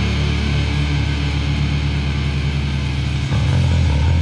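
Heavy rock music led by electric guitar, instrumental with no vocals. The low end shifts and fills out a little past three seconds in.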